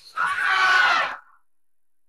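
A drawn-out vocal yell with a slowly falling pitch, lasting about a second, from the song's isolated vocal track.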